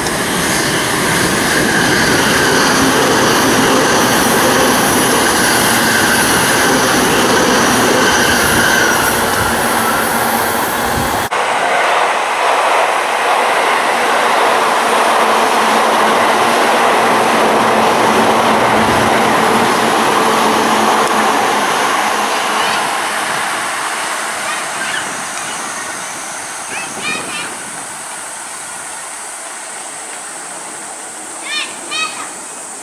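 Joban Line trains passing close below: first an E657 series limited express running by with several steady high whining tones over its rolling noise, cut off abruptly about eleven seconds in. Then a green-striped commuter train rolls past as an even rumble and hiss that fades away over the last several seconds.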